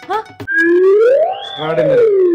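A person's long drawn-out wailing cry: one sustained sound that slides up in pitch and then back down.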